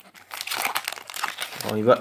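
Crinkling and crackling of a plastic hockey card pack wrapper being handled, a dense run of small crackles.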